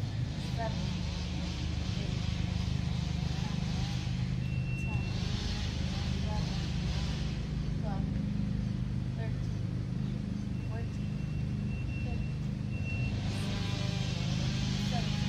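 A steady, low mechanical hum, with faint distant voices.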